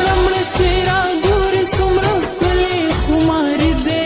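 A Pashto pop song, slowed down with heavy reverb: a drawn-out, wavering sung melody over a steady low drum beat.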